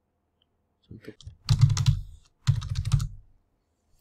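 Typing on a computer keyboard: two quick runs of keystrokes, about a second and a half in and again near the three-second mark.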